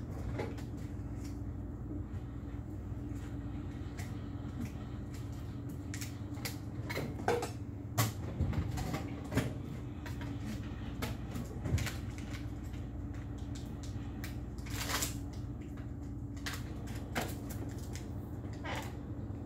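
Tattoo machine running with a steady low buzz, with scattered clicks and knocks from tools and supplies being handled.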